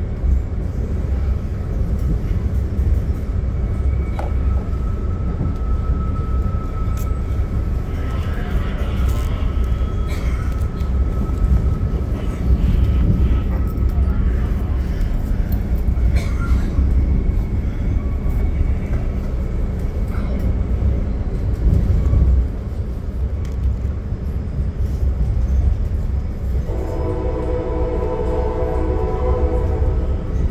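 Steady rumble of a Budd gallery passenger car rolling over the rails, heard from inside the coach. For the last few seconds a train horn sounds a steady chord.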